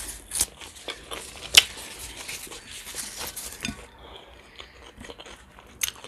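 Thin lavash flatbread handled, torn and unfolded by hand: a dense run of small crackles and clicks, the sharpest about a second and a half in, thinning out after about four seconds.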